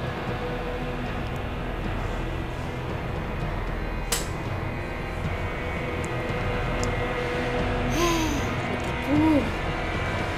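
Background drama score of sustained tones, with a single sharp click about four seconds in and a brief vocal sound near the end.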